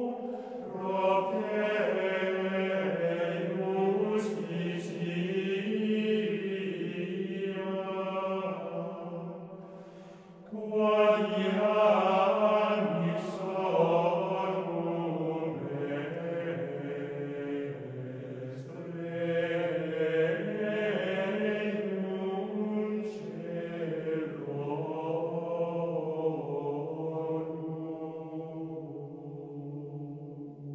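Slow unaccompanied religious chant sung by several voices over a held low note. One phrase fades out about ten seconds in and the next enters strongly.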